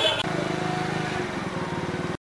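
Street voices for a moment, then a motor vehicle engine running steadily with a low, even, pulsing note.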